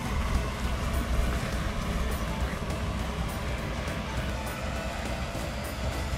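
Low, uneven rumble of wind buffeting the microphone outdoors, with background music faintly underneath.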